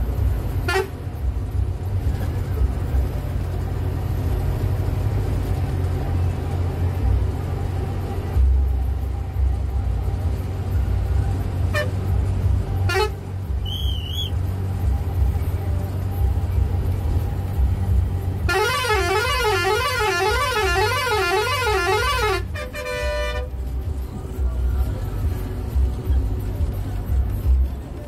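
Bus engine running steadily, heard as a low rumble inside the cabin, with short horn toots about a second in and again around twelve seconds. Near the end a warbling horn wavers up and down for about four seconds, followed by a brief steady toot.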